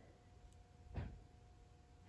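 Near silence: room tone with a faint steady hum, and one brief soft thump about halfway through.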